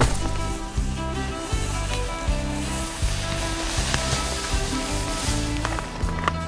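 Background music with a steady pulsing low beat, over a faint hiss.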